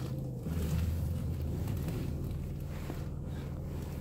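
Car engine running at low speed, heard from inside the cabin as a steady low hum while the car is steered.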